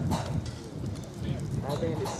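People talking in the background, with a few light knocks.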